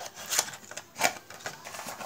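Playing cards and their cardboard tuck box being handled as cards are slid into the box: a few light clicks and taps of card on cardboard, the sharpest about a second in.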